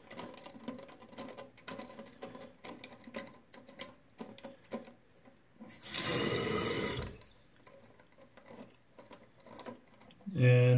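Small irregular plastic clicks as the float-height adjustment knob of a toilet fill valve is turned. Nearly six seconds in, a hiss of water rushing into the tank lasts just over a second: the fill valve opening briefly as the float is reset.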